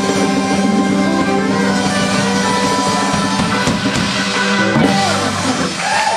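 Live band playing the closing bars of a rock song on electric guitar, drum kit and congas, with a held chord over the drums; near the end the sustained notes give way to falling pitch glides.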